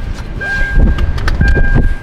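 Inside a car: the car's loud low rumble, with a few sharp clicks and a thin high tone that comes and goes.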